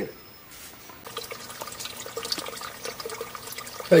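Water running from a brass tap and splashing into a water-filled tank, a steady stream starting about a second in.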